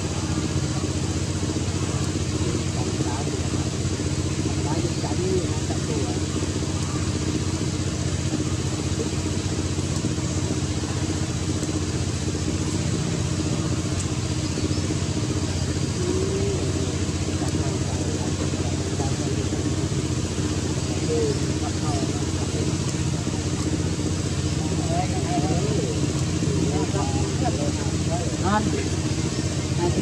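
A steady low engine drone that holds even throughout. Faint wavering voices come through now and then, more of them near the end.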